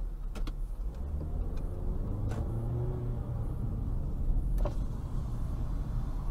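Car driving, heard from inside the cabin through a dashcam microphone: steady engine and road rumble, with a few sharp clicks, the loudest about four and a half seconds in.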